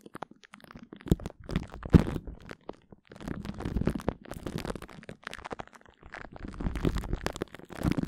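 Glue stick rubbed directly on a microphone: close, sticky crackling and small pops in irregular strokes with brief pauses between, the sharpest pop about two seconds in.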